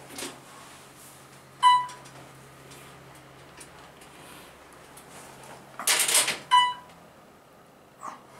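Dover traction elevator, modernized by Otis, travelling down with a steady low hum. A single-tone floor chime dings about a second and a half in and again near the end, just after a short rushing noise.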